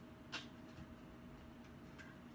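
One short faint click of the plastic packaging tray as the SLI bridge is lifted out of its box, over a faint steady hum.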